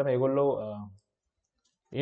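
A man's voice speaking, trailing off about a second in, followed by near silence until speech resumes.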